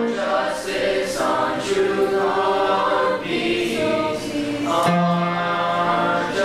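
A high school chorus singing in several parts. Its held notes change every second or so.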